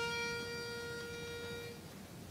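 A pitch pipe blown to give the starting note before an a cappella number: one steady reedy note, held for nearly two seconds and then cut off.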